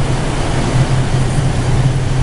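Large air-handler supply blower running in its mechanical room: a loud, steady low drone with a rush of moving air.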